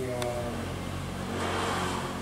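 A motor vehicle engine running past, its pitch slowly falling, with a swell of noise in the second half. A man's brief hesitant "à" comes just at the start.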